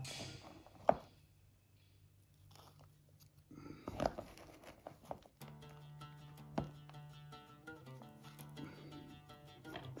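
Quiet background music, with a sharp click about a second in and light crunching and tapping later, from moss and a small plastic enclosure being handled.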